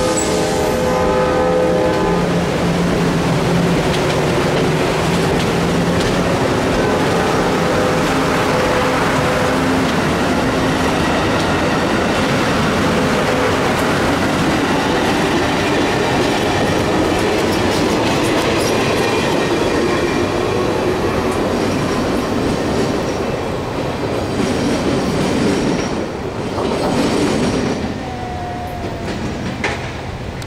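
Amtrak passenger cars rolling past as the train pulls out, with a steady rumble and clatter of steel wheels on rail and a multi-tone horn from the locomotive ahead during the first few seconds. Near the end the noise drops away as the last car goes by.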